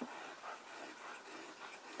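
Faint scratching of a Cross Apogee fountain pen's 18-karat gold nib writing on paper.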